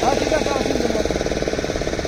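Motorboat engine running steadily with a fast, even pulsing, with faint voices over it.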